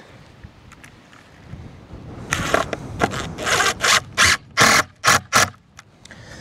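Cordless impact driver sinking screws into a treated-pine fence board, in a run of short bursts starting about two seconds in and stopping shortly before the end.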